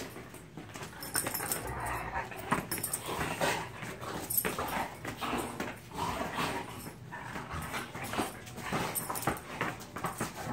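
Two large dogs play-fighting on a carpeted floor: irregular scuffling and jostling with short dog whines and grumbles throughout, and no barking.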